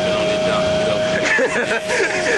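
Steady drone of a Greyhound bus running, heard from inside the cabin, with a constant hum throughout. A man's voice comes in over it about halfway through.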